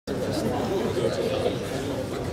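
Several people chattering indistinctly at once, voices mingling in a large hall.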